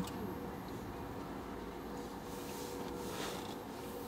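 Quiet background hum inside a parked car's cabin, steady with a faint thin tone through it and no distinct event.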